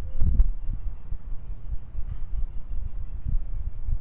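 Low, irregular rumble of wind buffeting the microphone outdoors, with a couple of brief knocks about a third of a second in.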